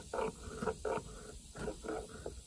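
Knife blade scraping and shaving bark and wood from a natural forked branch, in quick repeated strokes, a few a second.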